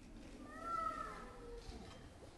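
A young child's brief high-pitched whine, about a second long, rising and then falling in pitch.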